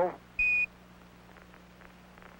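A single short high beep about half a second in: a Quindar tone, the keying tone that marks the end of a Capcom transmission on the Apollo air-to-ground radio link. It is followed by faint radio hiss with a low steady hum.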